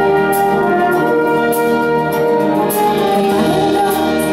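A concert wind band plays an instrumental passage of a pop song live: brass and reeds hold sustained chords over a drum kit, with a cymbal stroke roughly once a second.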